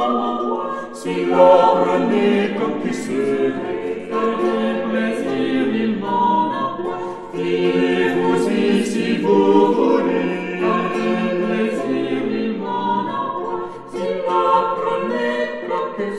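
A vocal ensemble sings Renaissance polyphony, several voice parts moving together in sustained notes and phrases, with a short dip between phrases about seven seconds in.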